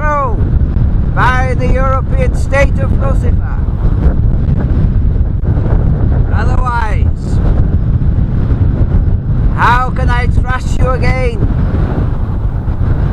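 Strong wind buffeting the microphone, a loud, continuous low rumble with no let-up.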